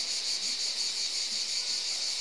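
Insects singing outdoors: a steady, high-pitched chorus with a faint even pulse.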